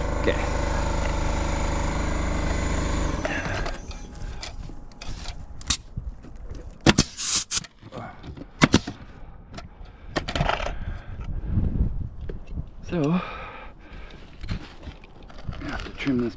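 Pneumatic coil roofing nailer firing twice, about seven and nine seconds in, each a sharp crack, among lighter taps and scrapes on the shingles. A steady machine drone cuts off abruptly about three seconds in.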